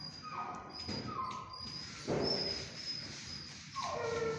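Dog whimpering: several short, high whines that fall in pitch, with a louder, rougher burst about two seconds in.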